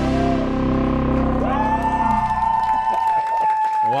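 Live keyboard-synthesizer music: low held chords die away about halfway through, while a single high note slides up and is held almost to the end.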